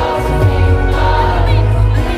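Live pop music over a concert PA: a woman singing lead into a handheld microphone over a band with a strong, steady bass.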